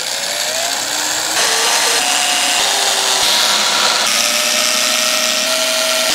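Cordless drill running as it bores pilot holes into an MDF subwoofer enclosure, its motor whine rising over the first second and then shifting in pitch a few times.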